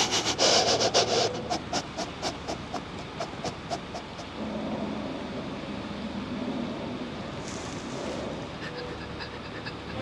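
A man's heavy, rapid breathing, about four short breaths a second, fading away over the first four seconds. A low steady tone comes in from about halfway through.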